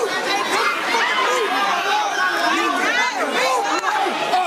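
A boy screaming in agony as his arm is twisted and broken, over several voices shouting at once, all overlapping with no break.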